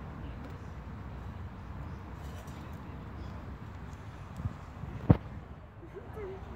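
Steady low outdoor background rumble, with a small knock about four and a half seconds in and one sharp, loud knock just after five seconds.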